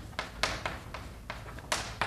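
Chalk tapping and clicking against a blackboard in a series of short, sharp taps as words are written, the last and loudest near the end.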